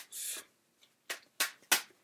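Tarot cards being handled and pulled from the deck: a brief rustle, then three sharp card snaps about a third of a second apart, the last one loudest.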